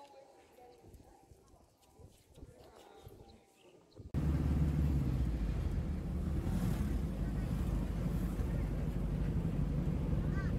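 Faint, quiet sound for the first four seconds, then a sudden cut to the loud, steady engine and road rumble inside a moving open-sided jeepney.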